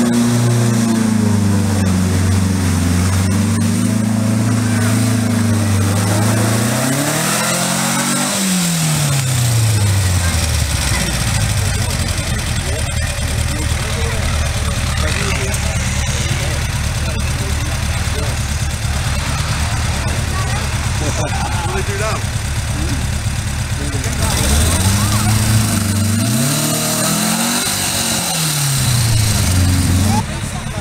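Volkswagen Beetle's air-cooled flat-four engine pulling uphill under load, revs held high and then dropping to a low idle about eight seconds in, running low and steady, and revving up and falling back twice near the end.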